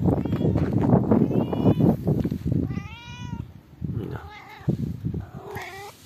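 A colourpoint (Siamese-type) cat meowing repeatedly, about five meows, the longest and clearest about three seconds in.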